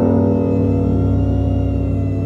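Suspenseful background music: a low sustained drone under held chords that enter just before and hold steady.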